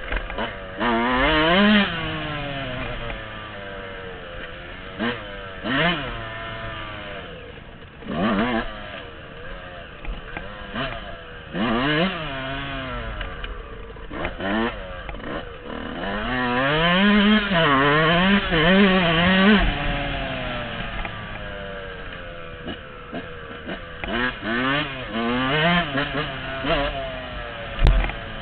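Dirt bike engine revving up and down as it is ridden, the pitch rising in short bursts every few seconds. A longer stretch of quick rises and falls comes about two-thirds of the way through.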